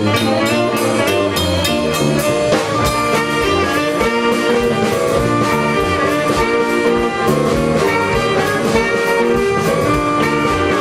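A saxophone band with a drum kit playing jazz live: the saxophone section holds pitched notes over steady drum strikes.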